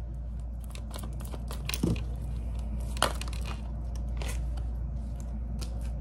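Tarot cards being shuffled and handled: a scatter of soft clicks and brushing rustles, with sharper snaps about two and three seconds in, over a steady low hum.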